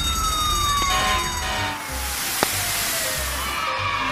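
Cartoon fire-truck siren sound effect: one long tone sliding slowly down in pitch, over children's background music with a steady low beat. A hissing rush joins about halfway through and fades near the end.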